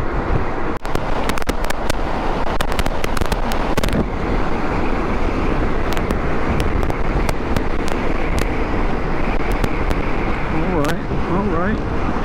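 Strong gusty wind buffeting the camera microphone on a Honda GoldWing motorcycle riding at highway speed. It makes a steady heavy rush with scattered crackling pops, over the bike's road noise.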